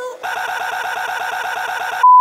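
A tiny slice of a man's voice looped very rapidly by editing, about a dozen repeats a second, making a steady buzzing stutter that starts a fraction of a second in.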